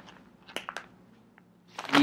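Handling of a packaged hair-weave pack: a few faint, scattered clicks and crinkles, then a brief rustle near the end.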